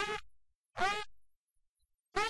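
A person's voice making short, separate sounds, two of them about a second apart, each trailing off.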